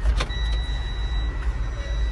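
Inside a semi-truck cab, a click is followed about a third of a second in by a thin, steady high-pitched electronic tone over a constant low rumble, as the truck is switched on for the ABS warning-lamp check.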